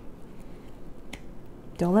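Quiet room noise broken by a single short click about a second in, then a woman's voice begins near the end.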